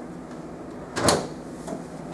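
Copier finisher's front door being shut, one clunk about a second in.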